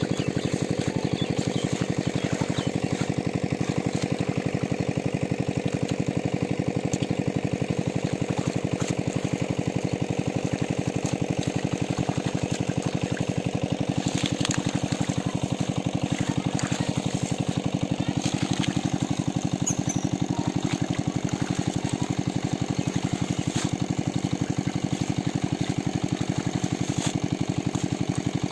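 A small engine running steadily at one constant speed with a fast, even pulse.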